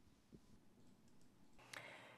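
Near silence: faint room tone with a slight tick.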